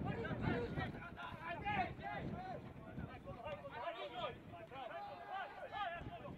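Indistinct shouts and talk from several overlapping voices, with no clear words.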